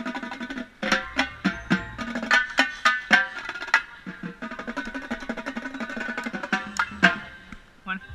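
Band music: a quick, dense run of struck notes that each ring with a pitch, over a low held tone, with a brief break just before a second in.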